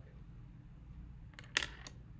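A steady low hum with a brief cluster of sharp clicks about one and a half seconds in.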